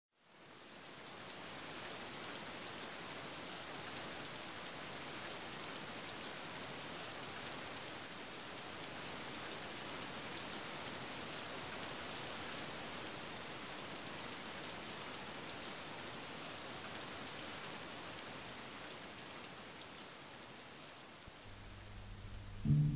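Steady rain-like hiss with faint scattered ticks, fading in over the first two seconds and holding level.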